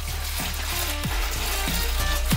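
Wort pouring steadily from a stainless steel pot into a plastic fermenter bucket, a continuous splashing rush, under background electronic music with a beat about every half second.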